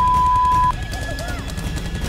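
A television censor bleep: one steady beep tone masking a swear word, cutting off abruptly under a second in, followed by raised voices.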